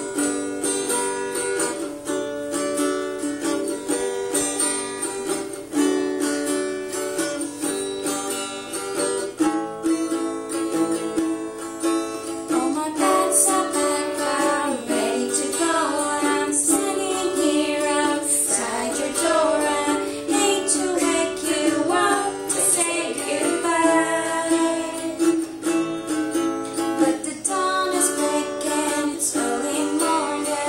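Small acoustic guitar strummed in steady chords as an accompaniment, with a girl's voice singing the melody over it from about twelve seconds in.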